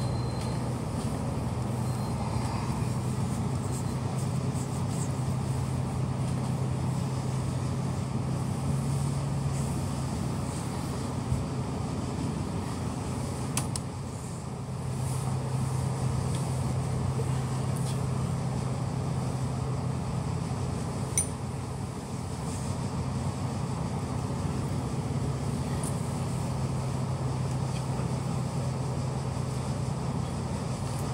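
Bus engine running with a steady low hum, heard from inside the passenger cabin. The bus draws to a stop and idles, and there are a few short clicks.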